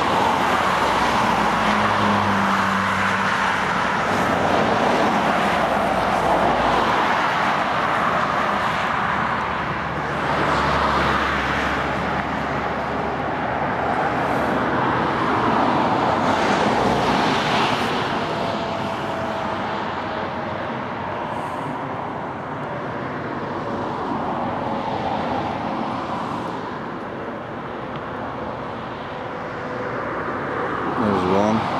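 Road traffic on a busy dual carriageway: a continuous wash of tyre and engine noise that swells and eases as vehicles pass. In the second half a faint whine slowly falls in pitch.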